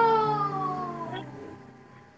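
A girl's long, acted wailing cry that falls slowly in pitch and fades out about a second in.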